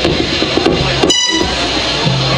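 Loud live band on stage playing a dense wash of amplified sound from keyboard and electric guitar. About a second in, a brief high-pitched tone cuts through.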